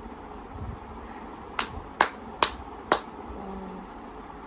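Four sharp hand claps, evenly spaced about half a second apart, starting a little after a second and a half in.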